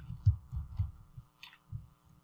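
Computer keyboard keystrokes heard mostly as dull low thuds through the desk, about six spread over two seconds with one sharper click near the middle, over a steady electrical hum.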